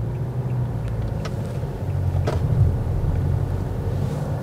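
Kia Sorento's 2.2-litre four-cylinder diesel engine running steadily under way, heard from inside the cabin as a low drone mixed with road noise, with a couple of faint clicks.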